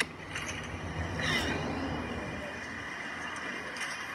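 A car passing on the road. Its tyre and engine noise swell to a peak about a second and a half in, then slowly fade. A short click comes right at the start.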